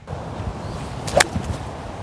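Golf club striking a ball out of the rough: one sharp crack about a second in. The rough caught the club, and the shot came out poorly.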